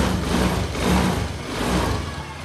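Small motor scooter engine running with a steady low drone while the throttle grip is held, warming up.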